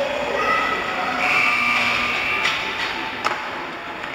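Several spectators shouting in an ice arena, held calls at different pitches. Two sharp knocks come about halfway through and again near the end.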